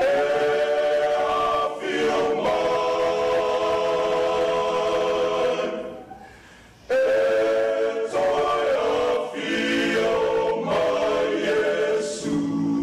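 A choir singing long held chords. The singing fades out about six seconds in, and a new phrase starts a second later.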